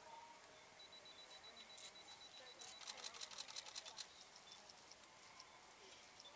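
A camera shutter firing in a rapid burst, about ten clicks a second for just over a second, midway through an otherwise near-silent stretch.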